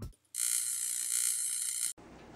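A steady, high-pitched hissing sound effect in an edited video intro. It starts about a third of a second in and cuts off suddenly just before the end.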